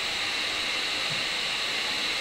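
Electric hot air gun running, its motor-driven fan blowing a steady rush of air with a high hiss.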